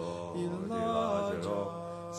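Male a cappella vocal sextet singing a spiritual in close harmony, with held chords over a low bass part.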